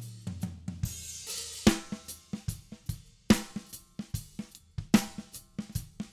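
Multitrack drum kit recording played back dry: kick drum and snare tracks with the Steinberg Envelope Shaper bypassed, and cymbal and hi-hat bleed from the other microphones heard on the snare track. The loudest hits fall about every second and a half, and cymbals wash about a second in.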